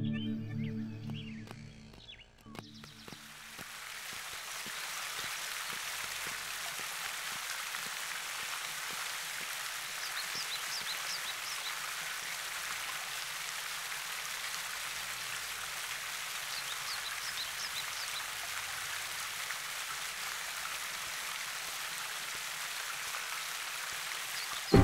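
A park fountain's water jets spraying and splashing into the basin: a steady hiss of falling water that comes in about three seconds in as music fades out. A few faint high chirps come twice in the middle.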